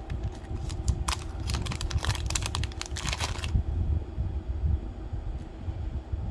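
Thin clear plastic jewelry bag crinkling and crackling in the hands as it is opened and a beaded bracelet is pulled out. A dense run of crackles in the first half, then quieter handling.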